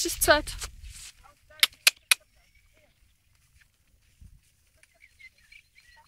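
The end of a person's spoken word, then three sharp clicks in quick succession, then little sound.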